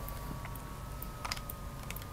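A few small clicks as hands handle a white plastic Samsung Galaxy S4 battery charging cradle and push a micro USB plug into its port, the clearest a little past the middle and another near the end. A faint steady high tone runs underneath.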